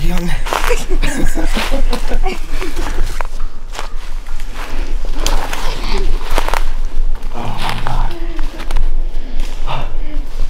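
Hurried footsteps crunching through dry leaf litter and brush, with excited, indistinct voices.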